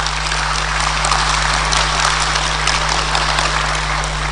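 Audience applauding, building up in the first second and then holding steady.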